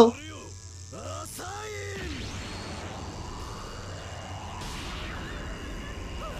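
Anime episode soundtrack: a character's shouted line in the first two seconds, then a swelling sound effect with a slow rising sweep and a burst of hiss about five seconds in, over music.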